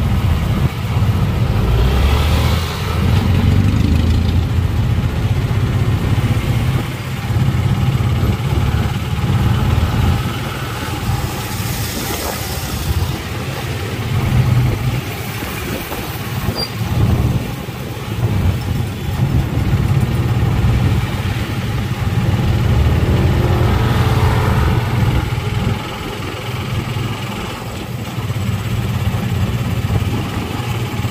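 Motorcycle tricycle's engine running, heard from inside the sidecar, with the engine note and loudness rising and falling as it rides through traffic. Other motorcycles are passing alongside.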